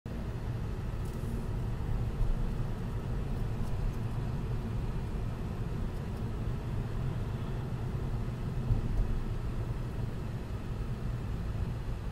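Road noise inside the cabin of a moving car: engine and tyres make a steady, low-pitched noise.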